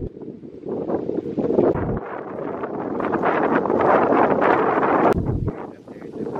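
Wind blowing across the microphone in gusts, swelling to its loudest about four to five seconds in and easing off near the end.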